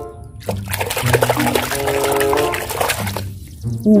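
Water splashing and sloshing in a plastic bucket as a hand scrubs a mud-caked plastic toy animal under the water. The splashing starts about half a second in and stops shortly before the end, over background music.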